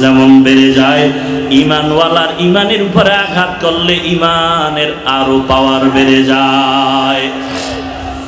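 A man's voice chanting in a melodic, sung style over a microphone and loudspeakers, holding long notes with gliding pitch: a preacher's tuneful sermon delivery.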